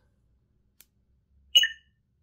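A faint click, then about one and a half seconds in a single short electronic beep from a Crystal Focus 10 lightsaber soundboard's speaker: a bright tone of two or three pitches that dies away quickly, a menu cue as the vocal menu moves on. Otherwise near silence.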